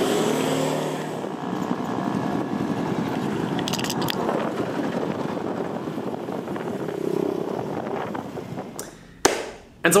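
An engine running steadily close by, a dense pulsing drone that fades out about eight and a half seconds in.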